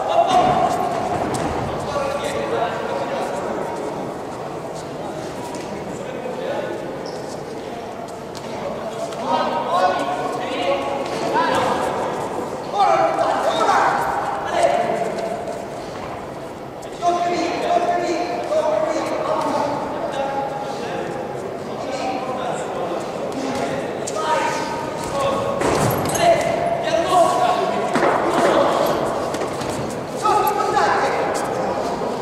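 Voices shouting and calling out in an echoing sports hall during a boxing bout, with occasional thuds.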